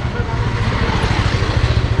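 A motorcycle engine running steadily at low speed, its fast firing pulses heard as a low throb, under a rush of wind and road noise.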